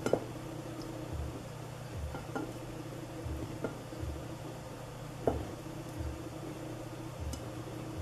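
Silicone whisk stirring sifted flour and cocoa into whipped egg batter in a glass bowl by hand: faint stirring with soft knocks about once a second.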